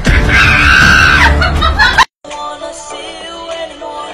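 Loud music with a person screaming over it for about two seconds, then a sudden cut to a quieter tune with steady notes.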